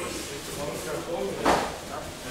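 Several people talking at once in a large hall, with one sharp thump about one and a half seconds in.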